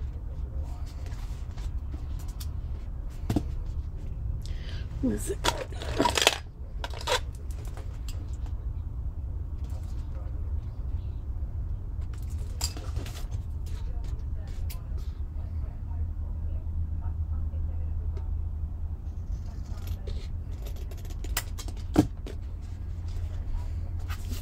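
Hands handling paper on a craft desk: paper sliding and rustling, with scattered sharp clicks and taps, the loudest cluster about six seconds in and a single sharp click near the end, over a steady low hum.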